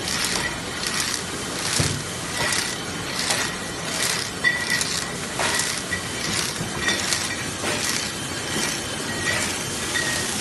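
Shrink sleeve labeling machine running, with glass wine bottles clinking as they ride the conveyor. Sharp clicks come about every three-quarters of a second over a steady machine noise.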